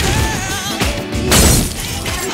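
Music playing, with a loud glass-shattering crash about a second and a half in.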